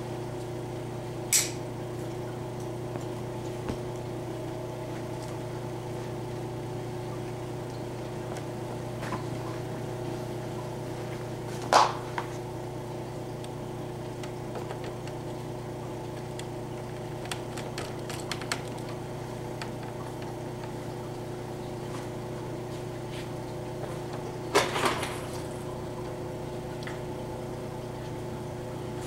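Steady electric motor hum, like a fan running, with a few sharp clicks and knocks from handling: one about a second in, a louder knock about twelve seconds in, and two or three more near twenty-five seconds.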